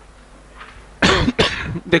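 A man coughing twice in quick succession, starting about a second in, loud against quiet room noise.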